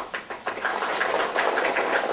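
Audience applauding: a few scattered claps at first, thickening within half a second into steady, dense clapping.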